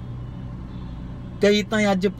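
A man's voice singing a Punjabi song unaccompanied breaks off, leaving only a low steady hum inside the car for about a second and a half, then comes back in with held, gliding notes.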